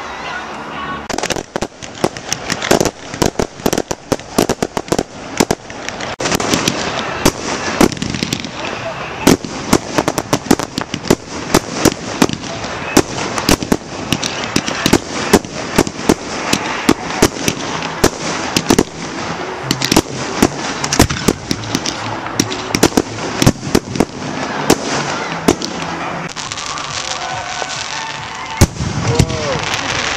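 Fireworks display: a rapid, continuous barrage of aerial shell bursts, sharp bangs following one another a fraction of a second apart, the loudest bangs near the end.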